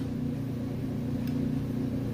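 Steady low machine hum, several even tones held without change, as from a fan or motor running.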